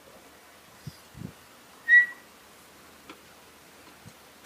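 A single short, high electronic beep from the vehicle as it is put into reverse and backs up, about two seconds in. A couple of faint low knocks come just before it, in an otherwise quiet cabin.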